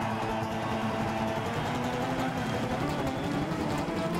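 Two acoustic guitars played live as a fast instrumental duet: a driving strummed rhythm with percussive hits under a picked melody line.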